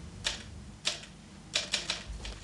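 Typewriter keys being struck: two single strikes, then a quick run of four near the end.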